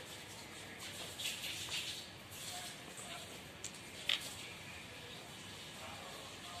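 Faint rustling of newspaper and a paper pattern under hands as small buttons are set out, with two light clicks about half a second apart past the middle.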